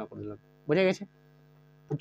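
Faint, steady electrical mains hum running under a man's speech; it is heard on its own in the pause after his one spoken word.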